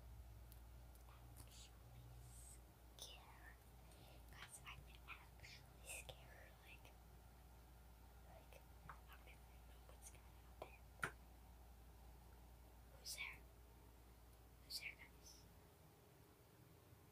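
A child whispering very softly close to the microphone, in scattered breathy syllables over a faint low hum, with one sharp click about two-thirds of the way through.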